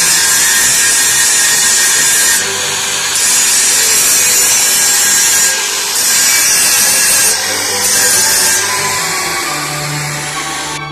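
Electric angle grinder grinding down a welded square-tube steel frame: a loud, harsh, steady grinding hiss that dips briefly three times.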